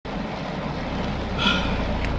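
Steady low rumble and hiss inside a car cabin in pouring rain, with a brief short higher sound about one and a half seconds in.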